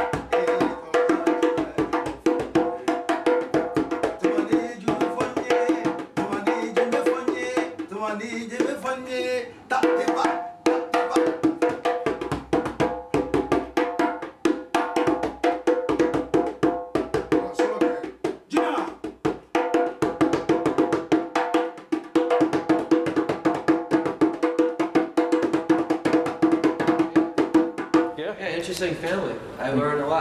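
A djembe played by hand with rapid, continuous strokes under a steady ring, pausing briefly twice. Near the end a man's voice takes over.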